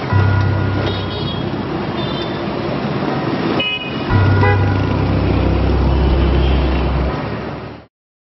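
Teaser sound design: city traffic noise with short car-horn toots under two deep sustained bass hits, the first at the start and the second about four seconds in, ending in a quick fade just before the end.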